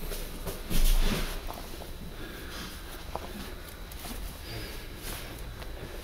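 A person thrown onto a foam judo mat lands with one dull, heavy thud about a second in. After it there is only the faint background of a large hall.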